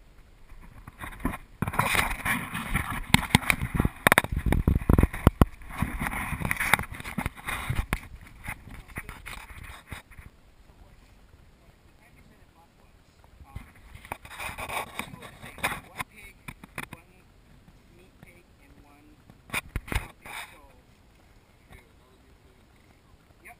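Handling noise from a GoPro camera being moved and turned around: close rustling, rubbing and knocking on the microphone in a long, dense bout over the first several seconds, a shorter bout later and a few sharp clicks near the end.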